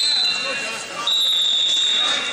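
Referee's whistle blown twice, a short blast and then a longer one of over a second, each a steady high-pitched tone, stopping the wrestling action.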